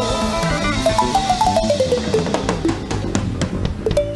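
Live band music with a drum kit: a melody steps down in pitch note by note while the drum hits grow busier toward the end.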